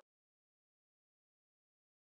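Silence: the soundtrack has ended.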